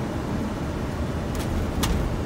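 Steady low rumble of airflow and engines at idle thrust inside an Airbus A330-300 cockpit during the landing flare, with two short sharp clicks near the end.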